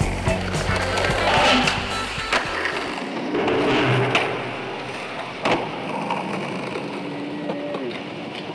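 Skateboard wheels rolling on concrete with sharp clacks of the board hitting the ground, one a little after two seconds in and one about halfway, over music whose bass drops out about three seconds in.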